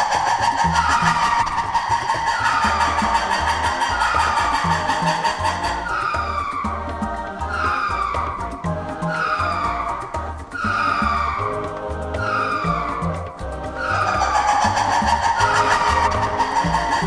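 Ring-tailed lemur calls: a high, squealing call that falls in pitch, repeated a little more than once a second, over background music with a steady low beat.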